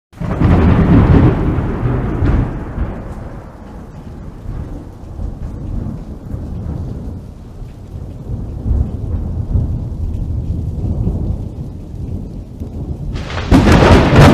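Thunderstorm: a loud peal of thunder at the start that rolls and fades, low rumbling thunder with rain hiss through the middle, and another loud burst of thunder near the end.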